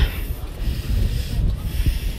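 Microphone handling noise: a low, uneven rubbing rumble as the phone is held and moved.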